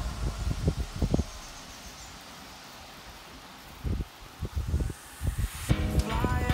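Wind buffeting the microphone of a camera riding on a moving bicycle: irregular low thumps in the first second and again in the second half, over a faint steady hiss of rushing air and tyre noise.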